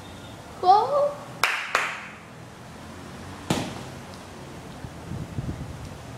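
A child's short cry, then sharp knocks: two in quick succession about a second and a half in, and a single heavier knock with a low thud near the middle.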